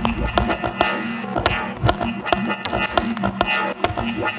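Leftfield electronic (IDM) music: dense sharp clicks and percussive hits over a steady low tone, with little deep bass.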